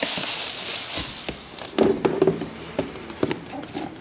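Plastic wrapping inside a shoebox rustling as a hand presses on it, followed by several sharp taps and knocks of the box and wrapping being handled.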